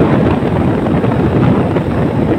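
Wind buffeting the microphone of a moving motorcycle, a steady loud rush with road and engine noise underneath.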